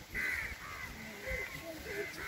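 A short bird call just after the start, with faint voices of the surrounding crowd.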